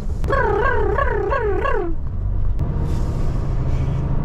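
Lorry cab engine and road drone, steady throughout, with a low hum added about two and a half seconds in. Over it, in the first two seconds, a high warbling sound rises and falls about four times.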